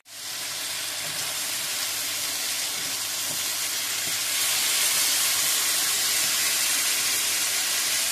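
Diced eggplant, onion and peppers with freshly added tomato sauce sizzling steadily in a nonstick frying pan. The sizzle grows a little louder about halfway through as the mixture is stirred with a wooden spoon.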